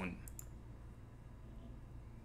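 A few quick, quiet computer mouse clicks, close together in the first half second, then faint room tone.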